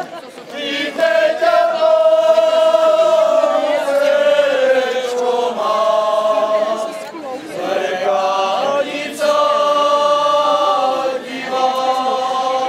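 A group of men and women singing a folk song together without accompaniment, in long held phrases with short pauses for breath between them.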